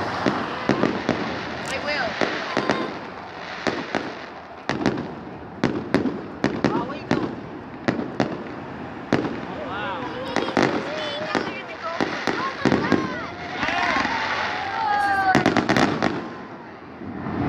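Aerial fireworks display: a continual run of sharp bangs and crackling bursts, irregularly spaced, some in quick clusters.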